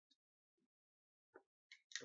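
Near silence, broken by one faint short click about two-thirds of the way through as the paintball marker's bolt parts are pushed together by hand.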